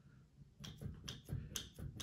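Chrome radiator valve on a heated towel rail clicking faintly as it is wobbled by hand, a string of small clicks a few per second from about half a second in. The valve's connection is dead loose and is the cause of the reported radiator leak.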